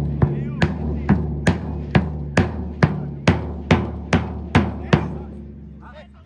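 A big bass drum beaten by spectators in an even beat of about two strikes a second, each stroke leaving a low ringing that carries under the next, stopping about five seconds in.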